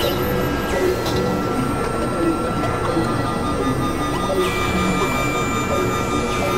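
Experimental electronic drone-and-noise music from synthesizers: a dense, grainy, machine-like noise bed under several steady held tones. A new high tone comes in about four and a half seconds in.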